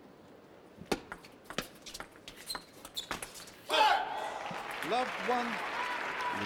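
A table tennis rally: the ball clicking off bats and table about three or four times a second for a couple of seconds. It ends in a sudden burst of crowd cheering and applause when the point is won.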